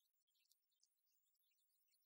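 Near silence, with only faint, scattered high-pitched crackles.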